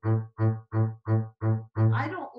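Double bass bowed in short, separate strokes on one repeated note, about three a second, each note stopped cleanly before the next. This is a controlled on-the-string orchestral bow stroke.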